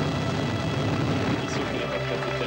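Dense low rumble of an Ariane rocket's engines just after liftoff, with music underneath.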